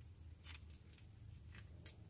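Faint clicks and scrapes of metal circular knitting needle tips as stitches are knitted: a few light, separate ticks over a low steady hum.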